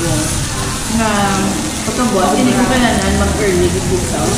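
Pork belly sizzling on a tabletop Korean barbecue grill plate, a steady hiss heard under a woman talking.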